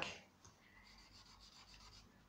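Faint rubbing of a charcoal stick on paper: a few soft, light strokes as a line is drawn.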